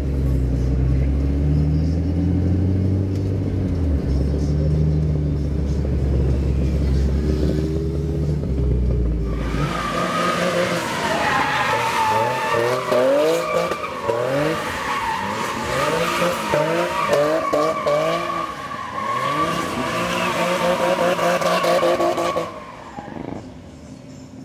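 A Nissan 350Z's V6 engine heard from inside the cabin, revving up and down for the first nine seconds or so. Then, from outside, the car drifts with a long, wavering tyre squeal over the engine's revs, dying away shortly before the end.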